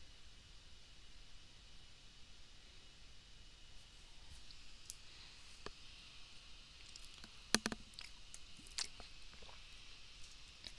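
Faint steady hiss with a few small, sharp clicks scattered through the second half, the sharpest about seven and a half seconds in.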